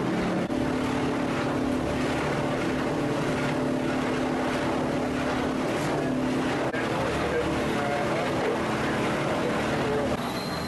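Motorboat engines running at a steady pitch and level while the boat is underway, heard from inside the enclosed wheelhouse.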